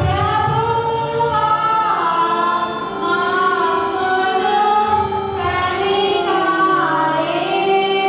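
A group of women and girls singing a hymn together, with long held notes that glide between pitches.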